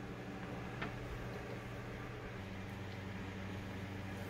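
Steady low hum with a faint hiss, and a soft click about a second in.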